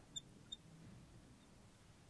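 Near silence, with a few faint, short squeaks of a marker writing on a glass lightboard, two of them within the first half-second.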